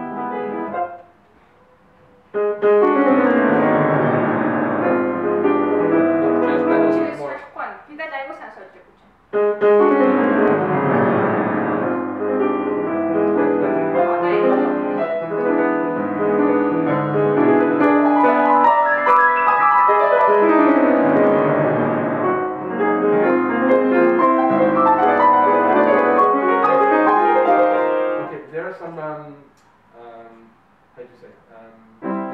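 Grand piano playing a classical passage in two phrases, breaking off briefly around seven seconds in and stopping shortly before the end.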